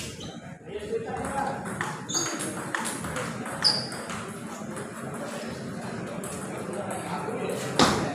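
Celluloid-type table tennis ball clicking a couple of times on the table and bat as a serve is readied, over steady chatter of spectators in a hall; a sharp, loud bat-on-ball crack near the end as the rally begins.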